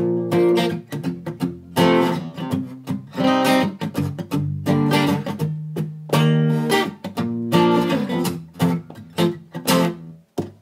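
Acoustic guitar strummed in a fast rhythm, the verse chords played with the right hand lightly muting the strings, with a strong full strum and a change of chord about every second or two.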